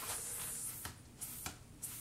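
Faint rustling of work-gloved hands handling a car tire, the rustle fading about a second in, followed by a couple of soft knocks.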